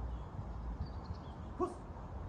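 German Shepherd giving a single short bark about one and a half seconds in, over a steady low rumble.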